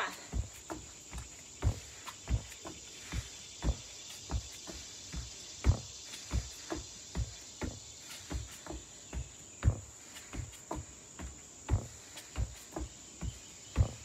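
Feet in trainers landing on an exercise mat over a wooden deck during plank jacks and plank tucks: a steady run of soft thumps, about two a second, some heavier than others.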